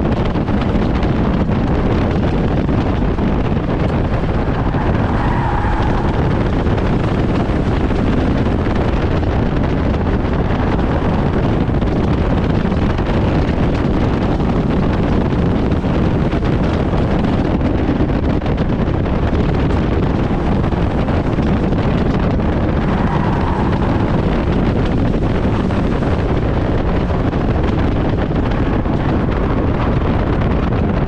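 Stock car's engine running under load through a race, heard from inside the stripped cabin, with wind buffeting the in-car microphone as a steady loud rumble.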